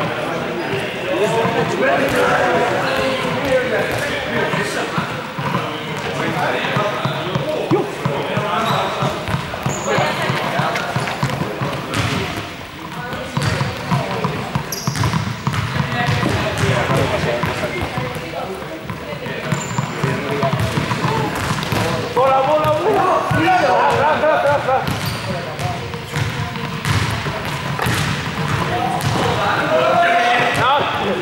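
Several young people talking and calling out in a large sports hall, with balls bouncing and thudding on the court floor throughout.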